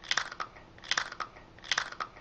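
Close-up crunching of a person biting and chewing a crisp chip, three crunchy bursts about a second apart, each a quick run of cracks.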